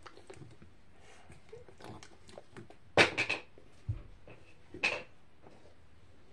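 Eating noises close to the microphone: a biscuit being bitten and chewed, with a loud crunchy burst of several quick strokes about three seconds in and a shorter one near five seconds.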